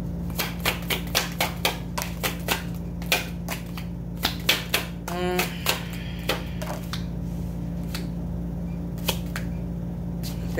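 A deck of reading cards being shuffled by hand: a run of sharp card clicks and taps, about three a second for the first few seconds, coming again around the middle and thinning out after, over a steady low hum.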